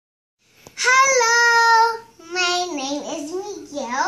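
A young child's voice: one long, steady, high sung note for about a second, then a sing-song run of syllables with rising and falling pitch.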